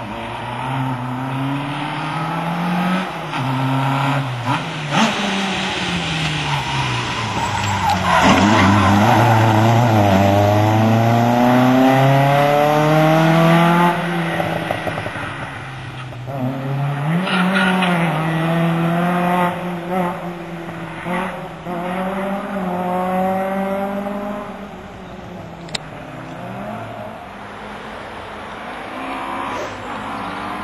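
Slalom competition car's engine revving hard through the gears, its pitch climbing and dropping again and again as it accelerates and lifts; the loudest, longest climb comes about a third of the way in. Near the end another car's engine starts rising in pitch.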